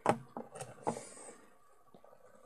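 Handling noise as hands reach in to pick up a guinea pig: a sharp knock at the start, then three or four lighter knocks and rustles within the first second, fading to faint rustling.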